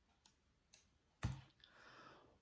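Near silence broken by a few faint clicks and one sharper click a little past a second in, followed by a soft breath: a man's mouth clicking and breathing in during a pause in his speech.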